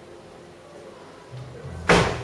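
A low hum, then a single loud, sudden thump near the end that rings out briefly.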